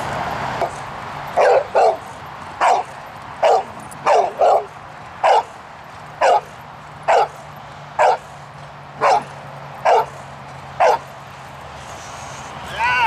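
Boxer barking steadily at a helper who stands still, a bark-and-hold guarding bark: about a dozen loud, sharp barks, roughly one a second, a few coming in quick pairs.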